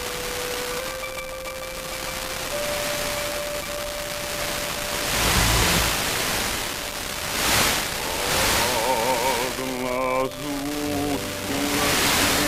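Old recorded music on a weak, long-distance OIRT-band FM broadcast at 68.69 MHz, buried in steady static hiss: a single held melody line at first, then a fuller passage with vibrato notes. The hiss swells twice about midway as the signal fades, typical of Sporadic E reception.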